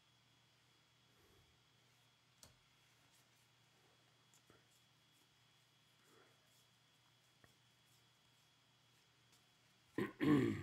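Near silence, with a few faint, scattered ticks of baseball trading cards being flipped and sorted by hand.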